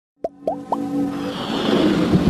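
Sound effects for an animated logo intro: three quick rising bloops in the first second, then a swelling whoosh that builds over steady musical tones.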